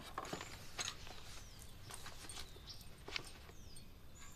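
Quiet room ambience with faint bird chirps, each a short downward-sliding whistle, heard now and then. A few light clicks, most likely the porceline bowl and spoon of porridge being handled, come through under it.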